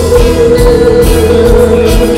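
Live band music with a female singer holding one long note over the band.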